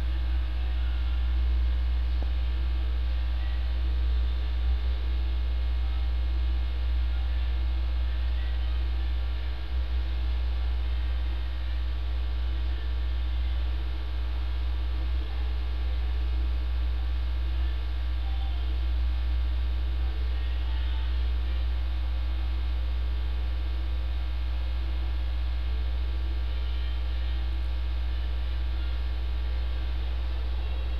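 A steady low hum with a stack of steady overtones above it, unchanging in level.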